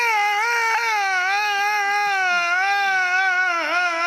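A man's voice holding one long, high, wavering sung note, a chanted lament in a zakir's majlis recitation, amplified through microphones. The note sinks a little near the end.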